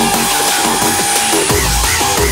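Newstyle hard-dance track in a continuous DJ mix: a fast rhythmic pattern with a held high synth tone, then a deep, heavy bass kick comes in about one and a half seconds in as the tone drops out.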